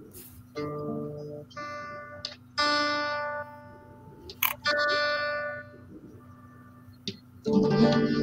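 Acoustic guitar: four separate plucked notes or chords, each left to ring and fade out over about a second.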